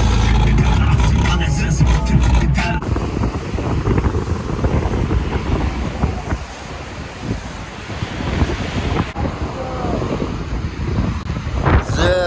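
For about the first three seconds, the low rumble of a car on the move, heard from inside the cabin. Then wind buffets the microphone over the sound of rough sea waves breaking against a breakwater.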